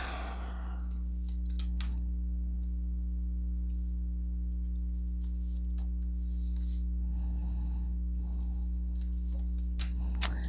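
Oracle cards being handled and dealt onto a tabletop, heard as a few faint clicks and soft slides over a steady low hum.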